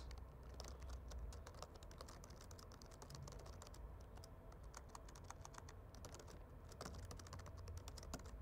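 Faint typing on a computer keyboard: a steady run of quick keystroke clicks.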